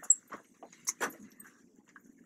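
Students moving about a classroom: a few short, sharp knocks and shuffles, the clearest just after the start and about a second in, over a faint low murmur of the room.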